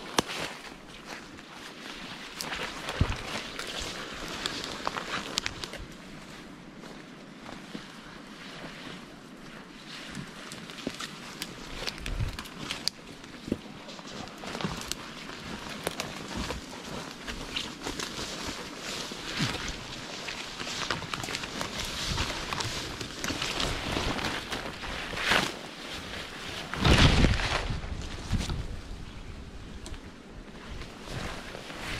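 Footsteps and body brushing through dense forest undergrowth: twigs snapping, leaves, branches and clothing rustling in a steady run of small crackles. A loud rumble hits the microphone about 27 seconds in.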